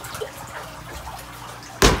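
Water running and splashing in a boat's live well. Near the end comes a single sharp knock, louder than the water.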